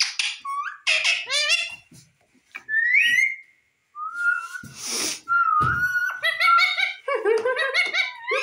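Indian ringneck parakeet whistling and chattering in quick, high calls that sweep up and down in pitch, with a single rising whistle about three seconds in and a short noisy burst near five seconds, before the chatter turns dense again near the end.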